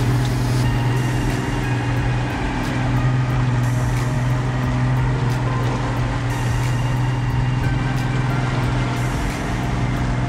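Boat engine running steadily while trolling, a constant low drone, over a steady rush of water and wind.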